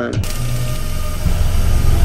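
Television static hiss that switches on suddenly, with a low rumble under it.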